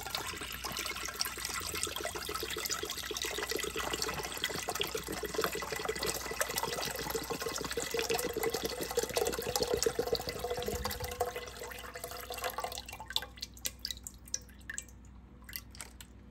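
Coconut water poured in a stream from a carton into a stainless steel pot of coconut milk, splashing steadily for about twelve seconds, then thinning to a few last drips.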